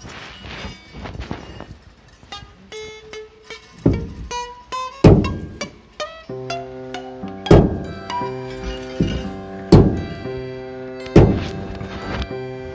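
A whole coconut struck hard against the side rail of a truck bed: about five loud knocks, one every one to two seconds, beginning about four seconds in. Music with held keyboard-like notes plays under it from a couple of seconds in.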